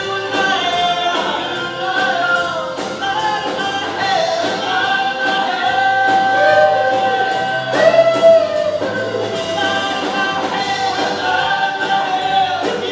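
A live band playing a song, with a lead vocal over strummed guitars and a drum kit keeping a steady beat on the cymbals. A long sung note swells about eight seconds in.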